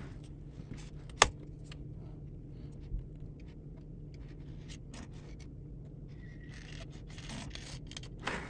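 A PantoRouter's pointer scribing a center line on the MDF face of a clamping jig: light, scratchy scraping, strongest in the last two seconds, with a sharp click about a second in and a faint steady low hum underneath.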